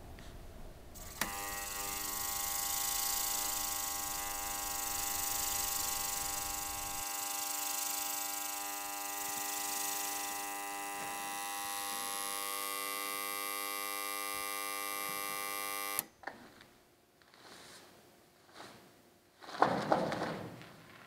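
Steady electrical hum, a buzz made of many tones, that switches on with a click about a second in and cuts off suddenly with another click about sixteen seconds in. A few soft thumps follow, then a brief louder noise near the end.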